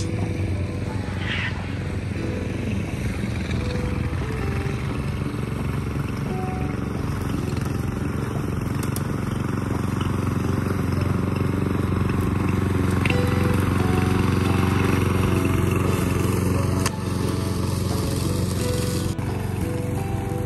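Petrol walk-behind lawn mower running steadily as it is pushed over grass, growing louder toward the middle and dropping a little near the end.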